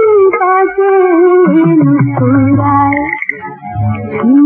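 A female singer sings a 1960s Urdu film song in long, gliding held notes over instrumental accompaniment, with a brief break in the music near the end.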